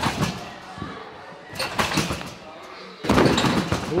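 Thuds and bounces of gymnasts landing on trampolines and gym mats, echoing in a large hall, with a louder burst of thumping about three seconds in.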